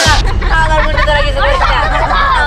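Several voices talking and calling over one another, with background music underneath.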